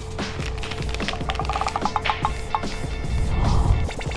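Plastic snack packet crinkling and clicking as it is opened and a piece of dried octopus is pulled out, with a quick run of ticks in the first couple of seconds, over steady background music.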